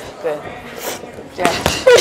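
Boxing gloves smacking into focus mitts during pad work, each punch with a sharp hissing exhale from the boxer, mixed with the coach calling out "jab".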